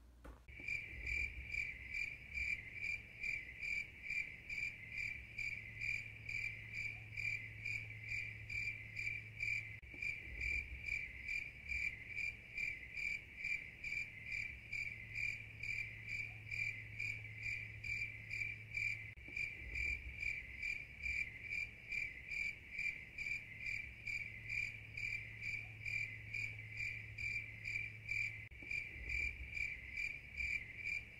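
Cricket chirping steadily: a high, evenly pulsed trill of a few chirps a second that keeps the same rate throughout.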